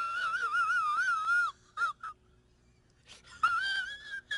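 A high-pitched, wavering vocal wail that wobbles up and down for about a second and a half, then two short yelps, a brief silence, and the wail rising again near the end.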